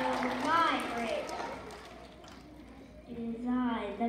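High-pitched voices speaking indistinctly in two short stretches, one at the start and one near the end, with a quieter gap between.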